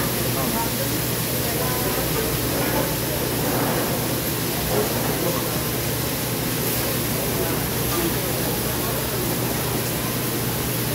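Noodles and meat sizzling steadily on a hot flat-top griddle, an even hiss, with a murmur of voices behind it.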